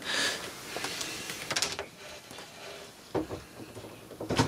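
Handling noise from a dismantled plastic inkjet printer: a brief rustle at the start, then scattered light clicks and knocks as a hand works around the print-head carriage.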